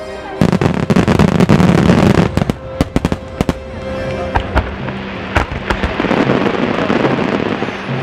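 Fireworks barrage: a rapid string of aerial shells bursting in loud cracks and bangs from about half a second in, thinning after about three and a half seconds into crackling with a few scattered reports.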